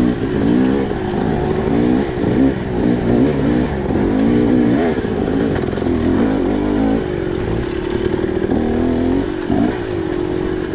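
KTM 300 two-stroke dirt bike engine heard from on board, its pitch rising and falling constantly as the throttle is worked over rough, tight singletrack.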